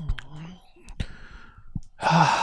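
A man's low, murmured voice in the first half second, then several sharp clicks scattered through the rest.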